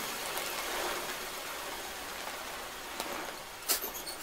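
Noise music made from modified recordings of found instruments: an even hiss, like rain, that slowly fades, with a faint click about three seconds in and a sharper strike near the end.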